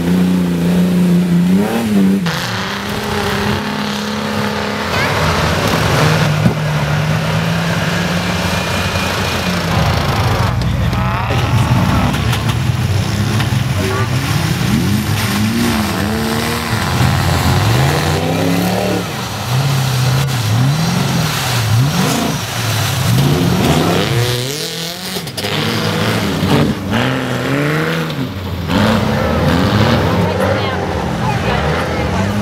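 Off-road 4WD engines revving hard, the pitch climbing and dropping again and again as the vehicles are driven through deep mud.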